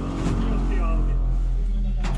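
Engine of a Buk M1 GM-569U tracked vehicle running with a steady low drone, heard from inside the crew compartment.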